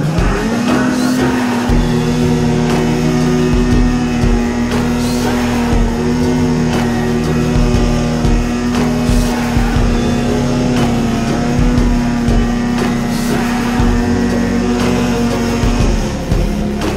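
Snowmobile engine under throttle, its pitch jumping up just after the start and then holding steady, with music playing underneath.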